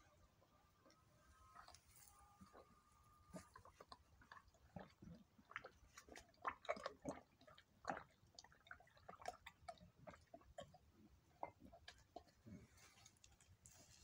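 Goat mouthing and swallowing as electrolyte solution is poured from a plastic bottle into its mouth: faint, irregular smacking clicks that come thickest in the middle seconds.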